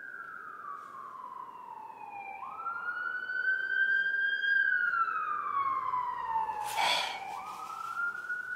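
Emergency vehicle siren wailing: a single tone slides slowly down in pitch, jumps back up and rises again, about five seconds per cycle. It grows louder toward the middle and then fades.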